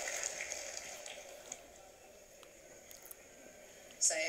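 Faint room tone: a low hiss that fades away over the first two seconds, with a few small clicks.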